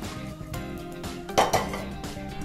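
A kadai clanks once as it is set down on the stove, about one and a half seconds in, over steady background music.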